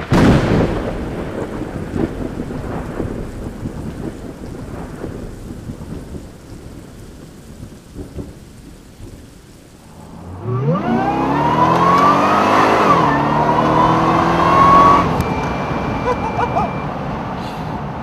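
A loud rumble that starts abruptly and fades over about ten seconds, then the supercharged V8 of a Geiger-tuned Corvette C6 under hard acceleration. Its pitch climbs steeply, holds high, and drops back twice.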